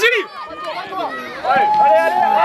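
Spectators' voices at a youth football match, several people talking and calling out, with one voice holding a long call near the end.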